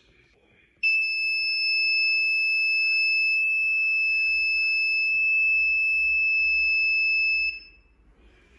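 Piezo buzzer sounding one steady high-pitched tone, starting just under a second in and cutting off near the end: the flame-sensor alarm set off by a lighter's flame held to the sensor.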